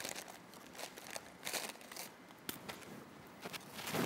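Soft, irregular crunching and crinkling close to a body-worn microphone as a cracker is handled and eaten, with a denser cluster of crunches about one and a half seconds in.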